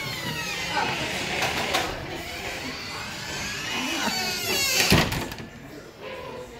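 Door hinges squealing in a wavering, high-pitched creak as the shop's front door swings open, with a single knock near the end as it shuts.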